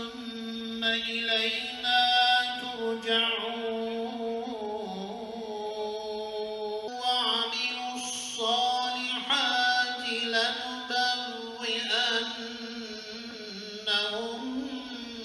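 A solo voice chanting a religious recitation in a melismatic style, holding long notes that waver and glide, with a short break for breath about halfway through.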